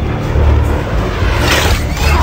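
A deep, steady rumble added as a sound effect, with a rushing whoosh that swells about one and a half seconds in.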